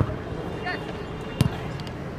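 A football kicked once, a single sharp thud about a second and a half in, over steady outdoor hubbub and a brief shout from a player.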